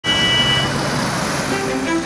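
Street traffic noise of minibuses and cars moving through a junction, with a brief high-pitched tone at the start. Bowed-string music comes in near the end.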